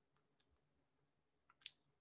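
Near silence with a few faint, short clicks. The loudest comes just before speech resumes.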